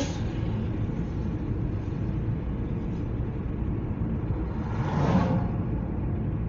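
Road and engine noise inside a moving car: a steady low rumble, with the brief whoosh of a vehicle passing about five seconds in.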